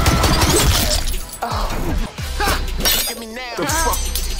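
Action-cartoon soundtrack: rapid gunfire from a heavy gun under a man's yell for about the first second. A song with a sung vocal then comes in, with a sharp shattering break as a knife blade snaps.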